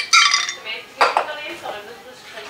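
Glassware clinking: two sharp, ringing clinks, one just after the start and another about a second in, as the pouring vessel knocks against the bottle.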